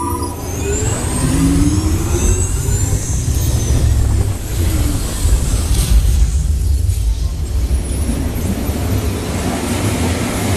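Test Track ride vehicle running along its track through the off-road, extreme-weather sequence: a loud, steady low rumble with a noisy whoosh over it. A rising sweep comes in the first couple of seconds.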